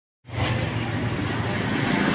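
Steady street traffic noise, vehicle engines and road din, starting suddenly about a quarter second in.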